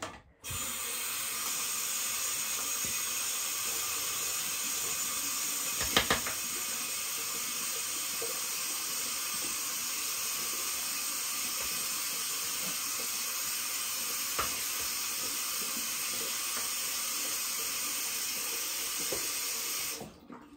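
Water running steadily from a tap while a hairbrush is rinsed under it, with a few knocks of the brush; the loudest knock comes about six seconds in. The water starts just after the beginning and is shut off right at the end.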